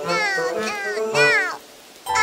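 A high-pitched cartoon child's voice singing "no, no, no, no" in four rising-and-falling syllables over a children's song backing, ending about a second and a half in.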